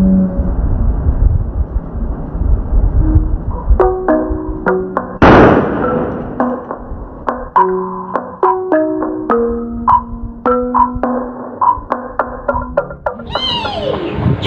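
Breath blowing into a rubber balloon, then one loud bang about five seconds in as the balloon bursts. Background music of short, bouncy notes follows.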